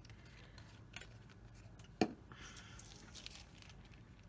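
Faint crinkling and rustling of a wet plastic sheet protector handled by fingers, with one sharp click about two seconds in.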